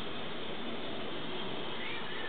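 A cat meowing faintly, with drawn-out calls that bend in pitch, over a steady hiss.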